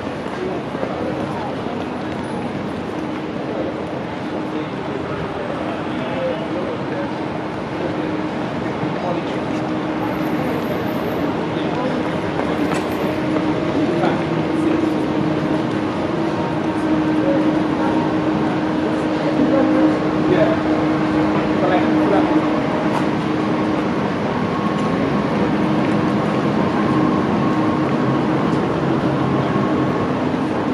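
Busy city street ambience: many passers-by talking and walking, over a steady hum of traffic. A low steady drone grows louder about halfway through and fades again.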